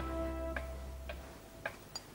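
A sustained music chord fades out in the first second, leaving a clock ticking steadily, about two ticks a second.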